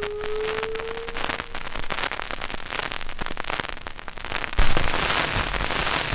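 Surface noise of a shellac 78 rpm record: dense crackle, clicks and hiss, with the music's last held note dying away in the first second. About four and a half seconds in, a louder low rumble joins the crackle.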